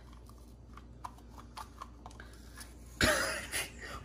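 Faint plastic clicks and creaks as a popsicle stick is worked loose in a plastic popsicle mold. About three seconds in there is a short, loud burst of noise.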